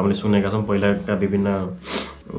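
A man speaking continuously, ending with a quick, audible breath in.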